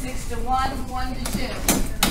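Children's voices talking in a busy classroom, with a few sharp clacks near the end.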